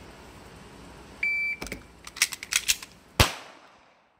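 Shot timer beeps once, about a second in. A few clicks of the pistol being picked up follow, then a single pistol shot near the end, just about two seconds after the beep.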